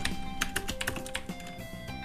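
Typing on a computer keyboard: a quick run of keystroke clicks as a line of code is entered, over quiet background music with steady held notes.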